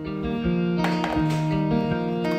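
Background music with plucked guitar notes over held tones.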